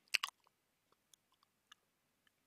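Two short faint clicks close together near the start, then a few tiny ticks in near silence.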